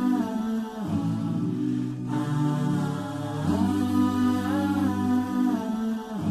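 Wordless vocal intro music: layered humming over a low sustained drone, with a rising-and-falling melodic phrase near the start that returns about four seconds later.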